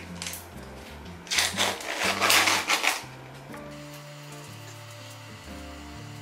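Swab wrapper being torn open and crinkled by hand, a loud rustle lasting about a second and a half that starts just over a second in. Background music with a low bass line plays throughout.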